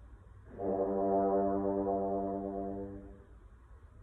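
French horn playing one long held note, starting about half a second in and fading away after about two and a half seconds.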